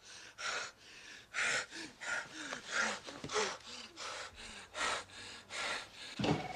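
A person gasping for breath in quick, ragged breaths, about two a second, with faint short moans between some of them.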